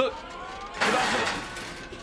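Electric stand-up reach forklift pulling away, with a thin rising whine of its drive motor, then a sudden loud, noisy rush just under a second in that eases off slightly.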